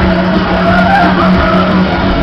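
A running 1975 Mack Musik Express ride: a steady rumble from its cars circling the hilly track, under loud music.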